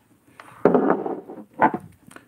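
Handling noise from perfume bottles being moved about on a table: a rustling scrape lasting about a second, then a brief second sound just after.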